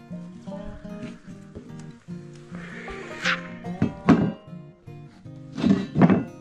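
Background music with a steady run of notes, broken by a few short, loud sweeping sounds about three to four seconds in and again near the end.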